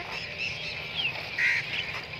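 Birds calling in open fields: a short falling chirp about a second in, then a brief call, over a steady high chatter of background birdsong.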